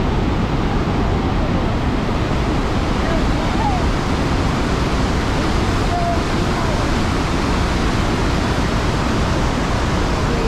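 A large river waterfall in heavy flow: a loud, steady rush of falling water, deepest in the low end.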